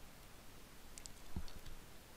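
A few quiet, sharp clicks about a second in, with a soft low thump among them.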